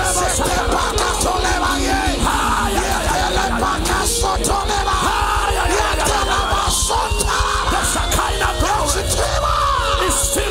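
Loud live music playing over a sound system, with a man yelling over it through a microphone.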